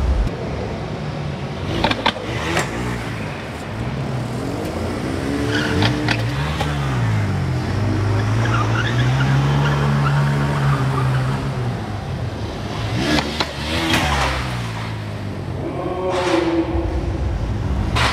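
Bajaj Pulsar stunt motorcycle's engine revving up and down, its pitch climbing and falling several times and holding steady for a few seconds in the middle.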